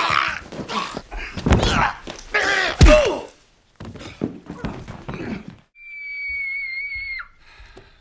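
A man being strangled in a film fight: strained, choked cries and groans over heavy thuds for about three seconds, ending in a falling cry with a hard thump. Later a steady, high electronic tone with a slight waver holds for over a second and drops away abruptly.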